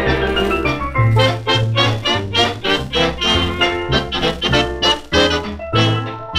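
Swing dance orchestra playing an instrumental passage from a 1937 recording, digitally restored from a 78 rpm record. Short detached notes run over a steady bass beat of about two a second.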